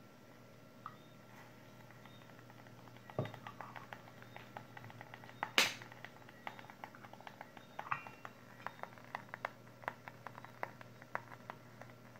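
Faint, irregular crackling ticks from a newly powered 220 V 150 W soldering iron as it heats up, growing more frequent in the second half. Two louder knocks come from the iron and a tester being handled on the stand, about three and five and a half seconds in.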